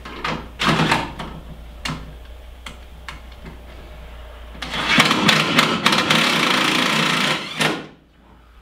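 A DeWalt cordless drill with a 7/16-inch socket runs for about three seconds, driving a mounting screw through a steel bracket into a pre-drilled pilot hole in a pickup bed. It stops suddenly as the screw seats. A few sharp knocks of handling the drill and bracket come first.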